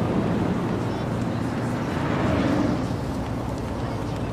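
Steady city street background noise: a low traffic rumble with indistinct voices.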